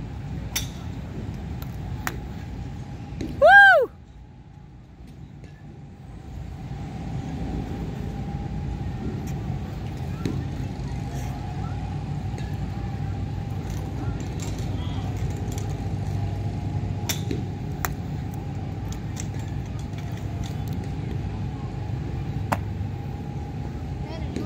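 Golf clubs striking balls at a driving range: sharp clicks that come singly, several seconds apart, over a steady low rumble. About three and a half seconds in comes the loudest sound, a short high whoop that rises and falls in pitch.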